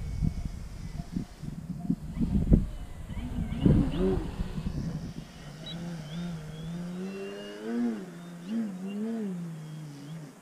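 Gusty wind buffeting the microphone, then an electric RC plane's motor and propeller humming as it flies low past. The hum rises and falls in pitch twice near the end.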